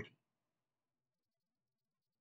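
Near silence: a pause in a man's narration, with the tail of his last word fading out right at the start.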